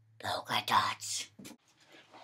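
A person whispering a few quiet words over a faint low hum.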